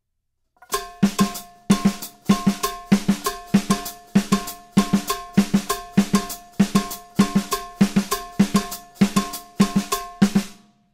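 Drum kit playing a Latin rhythm exercise: sticked strokes on snare and drums breaking up quarter notes against a rumba clave, with a ringing, pitched click from a mounted block. It starts about a second in and goes on as an even, repeating pattern.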